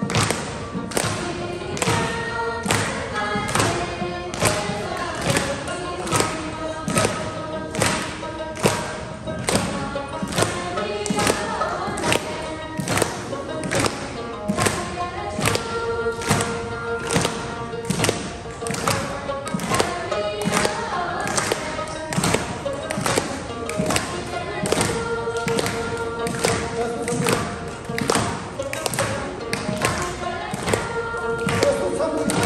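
An ensemble of Tibetan dranyen lutes playing a folk tune, strummed hard in a steady beat of about two strokes a second, with a plucked melody and a few long held notes over it.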